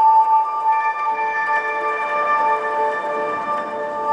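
Electronic music from a synthesizer setup of Eurorack modules and an Elektron Octatrack: several steady high drone tones held together, some pulsing gently on and off, with no beat or bass.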